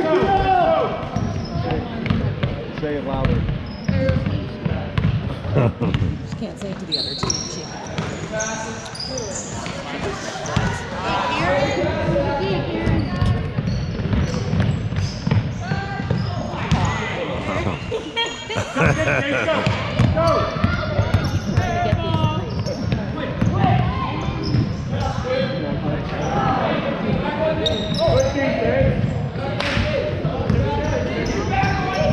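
A basketball being dribbled and bounced on a hardwood gym floor during play, with occasional short high sneaker squeaks and indistinct spectator and player chatter echoing in the hall.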